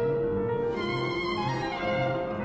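Violin playing sustained bowed notes with piano accompaniment, over evenly repeated low piano notes.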